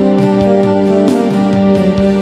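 Electronic keyboard playing the instrumental close of a song: steady held notes under a run of short melody notes, with no voice.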